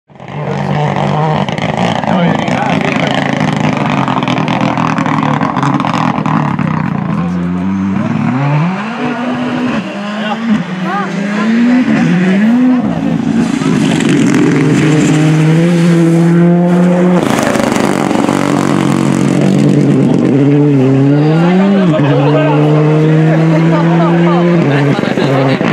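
Rally car engines running hard on a gravel stage. From about seven seconds in, the pitch repeatedly climbs and drops with gear changes and lifts off the throttle, then holds high under full throttle.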